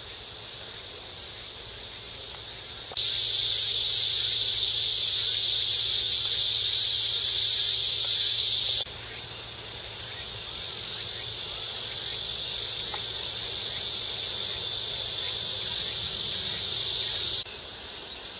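Cicadas buzzing: a steady, high, hiss-like drone starts abruptly about three seconds in and cuts off sharply near nine seconds, then a second drone swells gradually and stops suddenly just before the end.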